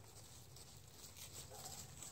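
Near silence with faint, scattered rustling of dry fallen leaves underfoot.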